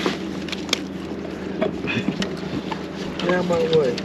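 Steady low hum with scattered sharp clicks and knocks inside a fishing boat, and a brief voice near the end.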